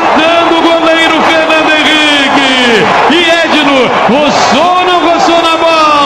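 A male radio football commentator's drawn-out goal cry, one vowel held on a steady high pitch for about three seconds, then breaking into shorter rising and falling shouted calls.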